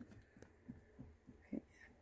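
Near silence: room tone with a low hum and a few faint, soft thumps.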